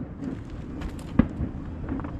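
Fireworks shells bursting: a few faint crackling pops and then one sharp bang about a second in, over a low rumble.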